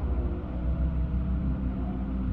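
Steady low hum with faint sustained tones and light hiss: the background of an old 1950s live recording during a pause in speech.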